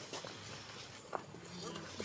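Faint human voice in the background, with a couple of short sharp clicks, one near the start and one a little over a second in.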